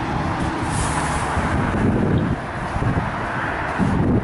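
Road traffic going by: a steady rush of tyre and engine noise with a low rumble.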